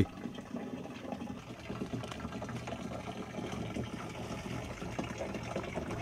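A steady stream of water pouring from a plastic pipe spout into a plastic jerrycan, filling it.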